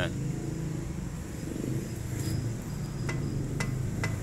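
Front wheel of a jacked-up Nissan rocked up and down by hand, giving a few sharp clicks about half a second apart in the last second: play in a worn, loose ball joint. A steady low hum runs underneath.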